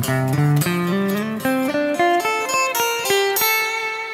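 Ibanez electric guitar playing a quick single-note lead phrase, picked notes stepping mostly upward, then settling on one held note that rings on and fades near the end.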